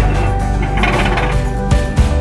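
Background music with steady held notes over a strong bass, and a short burst of noise about a second in.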